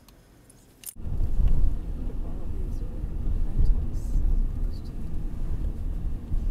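About a second in, a sudden cut from a quiet room to outdoors, where wind buffets the microphone in a loud, uneven low rumble.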